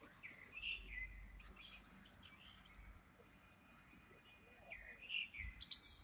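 Faint birdsong: small birds giving short chirps and whistles on and off, over a faint low rumble.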